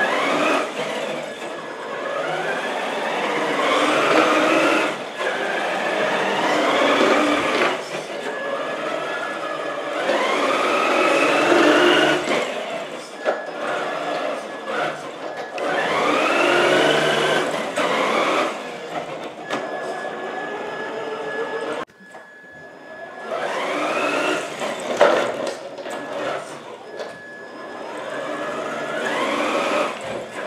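Electric motor and gearbox of a HG P408 RC Humvee whining in several bursts of throttle, the pitch rising as it speeds up in each run, with short lulls between.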